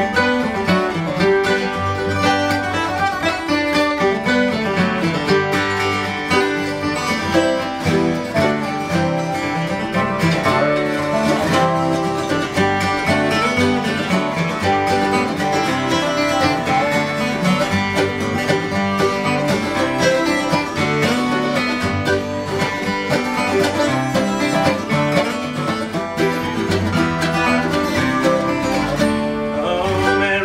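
Acoustic string band playing an instrumental break: strummed acoustic guitars under picked lead lines, with a slide guitar played flat on the lap.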